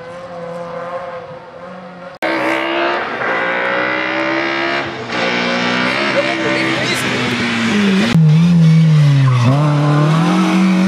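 Rally car engines revving hard, the pitch rising and falling with the throttle and gear changes as cars pass. Cuts change the sound abruptly about two seconds in and again about eight seconds in, the last car being the loudest.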